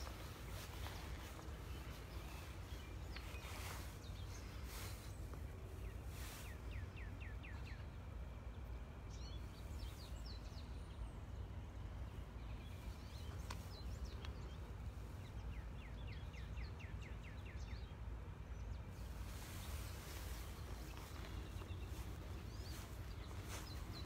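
Outdoor ambience: a steady low rumble, with a small songbird's rapid trill of quick descending notes heard twice, about a quarter of the way in and again about two-thirds in, and a few single chirps between.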